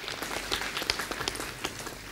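Audience applauding, a patter of many hands clapping that thins out near the end.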